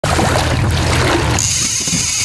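Music for the first second or so, then a fishing reel's drag starts screaming with a steady high whine as a fish strikes and takes line.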